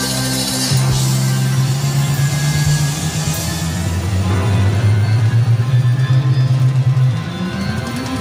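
A rock band playing live, with guitar and drums over heavy, held low notes; the chord changes less than a second in, and a quicker pulsing rhythm runs through the second half.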